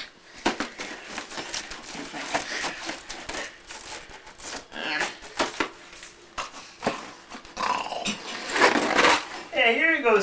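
Gift-wrapping paper and ribbon being ripped and crumpled in short rough bursts, with growling, grunting vocal noises of effort. It is loudest near the end.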